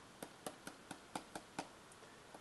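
Stylus tapping on a tablet screen, faint and even at about four taps a second, as dots of a scatter plot are drawn one by one.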